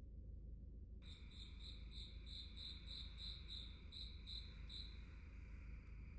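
Faint cricket-like insect chirping, a high pulsing note about three times a second, starting about a second in and stopping near the end, over a low steady hum.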